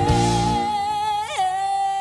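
A woman singing one long held high note with a live band; the band drops out about half a second in, leaving the voice nearly alone, with a brief flick in pitch partway through.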